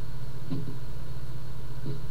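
A steady low hum with no speech, with two faint, brief small sounds, one about half a second in and one near the end.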